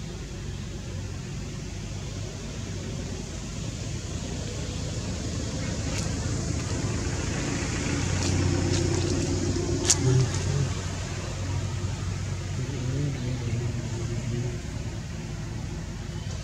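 Low rumble of a motor vehicle in the background, growing louder about halfway through and then easing off, with a few sharp clicks near the middle and faint voices.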